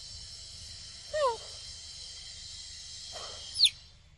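Steady high insect chorus of the forest, with two short falling animal calls: a low one about a second in and a louder, high one near the end. The chorus cuts off abruptly right after the second call.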